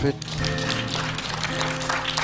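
Congregation applauding, a steady patter of clapping over sustained chords of background music.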